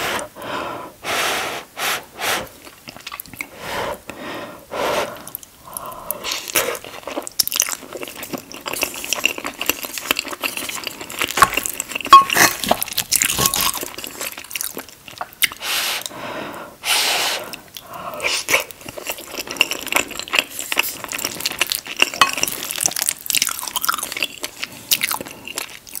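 Close-miked chewing of soft, cheesy shepherd's pie (mashed potato, ground beef and vegetables): irregular wet mouth sounds and bites, one after another.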